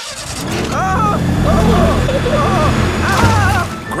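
Cartoon hovercraft engine sound effect: a low, steady drone that builds up over the first second as the craft sets off, then holds and eases off near the end. Excited cries from the riders sound over it twice.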